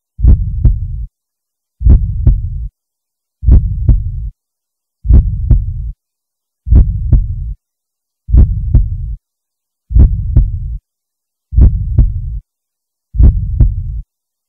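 Heartbeat-style sound effect: a deep double thud repeating about every 1.6 seconds, nine beats in all, each with a short low rumble and silence between beats.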